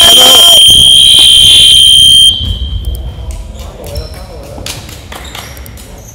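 Electronic game buzzer sounding one loud, steady high-pitched tone for a little over two seconds, signalling a timeout; the hall rings with it briefly after it stops. Short shouts and a bouncing basketball follow.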